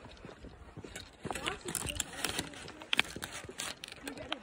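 Footsteps of a hiker walking on a dirt forest trail, an uneven run of soft knocks and clicks, with a sharper click about three seconds in.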